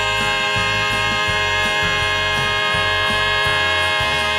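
Three-part male vocal harmony holding the hymn's final chord as one long, steady note over an instrumental backing with a low, pulsing bass.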